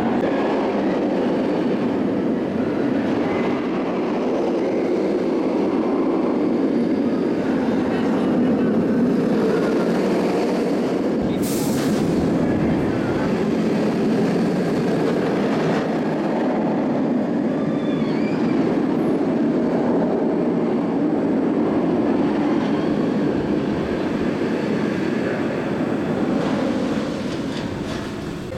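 Bolliger & Mabillard inverted roller coaster train running through its course on steel track: a steady, loud roar that eases off near the end.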